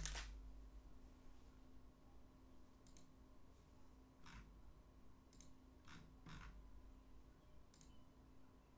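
Near silence: quiet room tone with a faint steady hum and a handful of soft, scattered clicks, the most distinct one right at the start.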